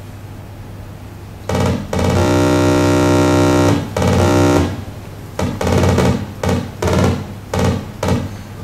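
Simulated Ferranti Pegasus loudspeaker output from the Pegasus simulator as it computes prime numbers: a steady electronic note starting about a second and a half in and holding for about three seconds, then a string of short notes.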